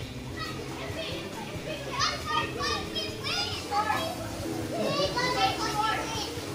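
Children playing in a pool, shouting and calling out excitedly, with bursts of high calls about two seconds in and again near the end.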